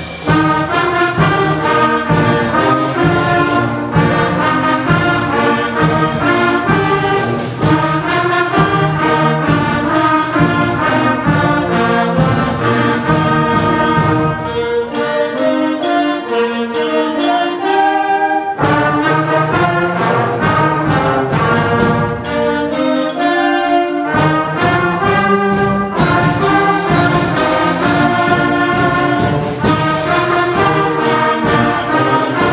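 A sixth-grade concert band playing a march, with saxophones, trumpets, trombones and tubas over steady drum beats. About halfway through, the low instruments drop out for a few seconds of lighter playing, then the full band comes back in.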